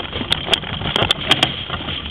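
A soapbox cart's wheels rolling over rough asphalt, a continuous rumbling rattle with irregular sharp clicks and knocks, together with the footsteps of the man running as he pushes it.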